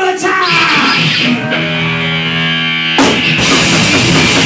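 Live thrash metal band: a held, distorted electric guitar note rings for a couple of seconds, then about three seconds in the full band kicks in loud with drums and distorted guitars.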